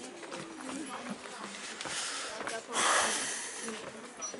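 Indistinct voices of people talking, with a short hiss of noise about three seconds in, the loudest sound here.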